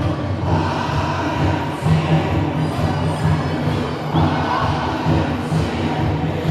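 Bon odori festival music with a regular taiko drum beat, over the noise of a large crowd.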